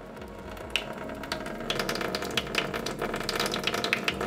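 Kitchen faucet running a thin stream onto the bottom of a stainless steel sink: a steady, crackling splash that starts right at the beginning and grows a little louder as the water spreads.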